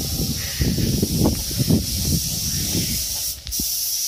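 Compressed-air spray gun hissing steadily as it sprays a clear varnish coat onto motorcycle engine parts, with uneven low rumbling underneath.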